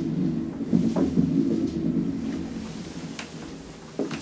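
ASEA Graham traction elevator giving a low rumble that fades away over a few seconds, with a sharp click about a second in and lighter clicks later, as the car comes to rest and its doors open.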